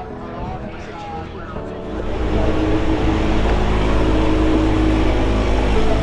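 Light aircraft's piston engine running steadily, heard loud from inside the cabin; it comes in suddenly about two seconds in, after a quieter stretch.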